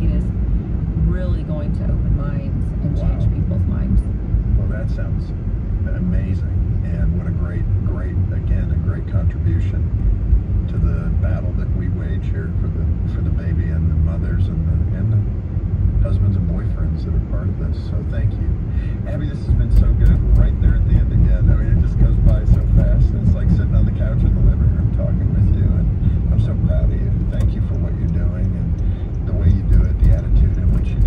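Road and engine rumble heard inside a moving car, steady at first and growing louder about two-thirds of the way in.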